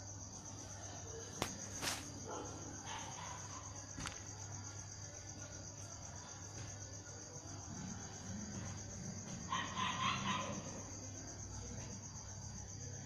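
A steady, finely pulsing high-pitched insect trill over a low hum. There are a few sharp clicks in the first four seconds and a short louder burst about ten seconds in.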